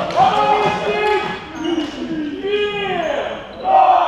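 Sports shoes squeaking on a sports hall floor in short, pitch-bending chirps, mixed with players calling out between volleyball rallies.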